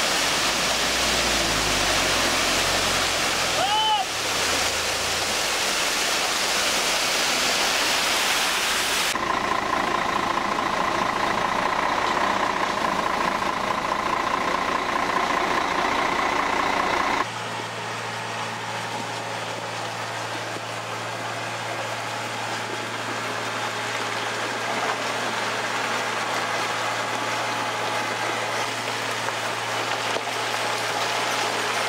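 Wet concrete sliding down a concrete mixer truck's chute with a loud, steady rushing noise. After a cut about nine seconds in, the Mercedes-Benz Axor mixer truck runs with a steady whine, and after another cut near the middle a steady low diesel engine hum takes over.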